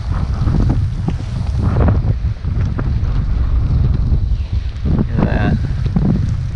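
Strong wind buffeting the microphone: a loud, steady low rumble, with choppy water lapping against the boat.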